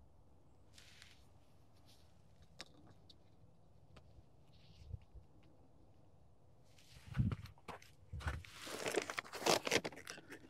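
Near silence with a few faint ticks, then from about seven seconds in a plastic bag of sugar crinkling and rustling in irregular bursts as it is handled.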